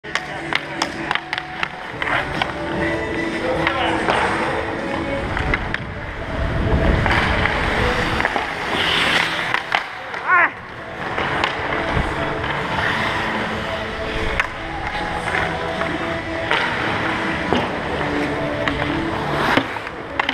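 Ice hockey skates scraping and carving on rink ice, with sharp clacks of sticks hitting the puck and the ice, and voices and music in the background.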